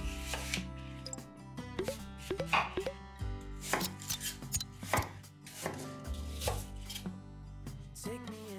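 Kitchen knife cutting peeled apples into pieces on a wooden cutting board: a series of crisp chops, irregularly spaced at roughly one a second.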